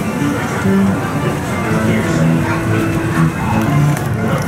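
Music with a guitar: a melody of held notes that change every half second or so, at a steady level.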